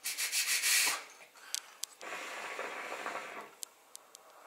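Hookah being smoked: the water in the base bubbles as smoke is drawn through it. The bubbling is loudest in a burst during the first second, then returns steadier and quieter for about a second and a half.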